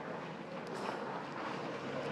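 A short, faint hiss from a puff of an asthma inhaler breathed in, about two-thirds of a second in. Steady wind noise on the microphone runs underneath.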